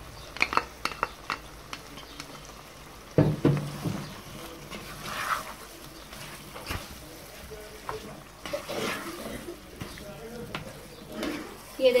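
A spoon stirring chicken tikka pieces through a thick spiced yogurt gravy in a pan, with scrapes and clinks against the pan over a low frying sizzle; one louder knock about three seconds in.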